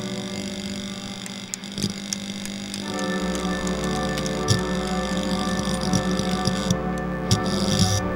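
Film score music of sustained, layered drone tones. A deep low hum joins about three seconds in, with a few scattered sharp clicks over it.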